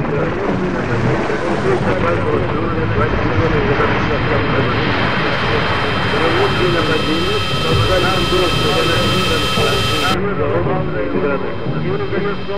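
Industrial noise collage: a loud, dense layered drone with wavering, voice-like sounds, joined by steady high whistling tones that build from about four seconds in and cut off suddenly about ten seconds in.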